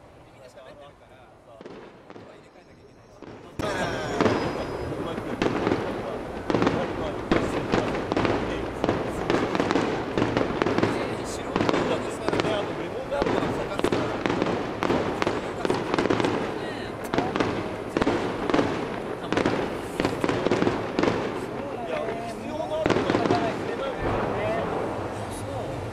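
Fireworks shells bursting in quick succession: a dense, continuous run of booms and crackling that starts abruptly about three and a half seconds in, after a quiet stretch.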